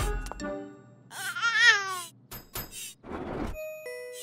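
Cartoon soundtrack: a sharp thunk with a low thud as a toy robot drops to the floor, then a loud, wavering, one-second cry in a baby's voice, over light background music.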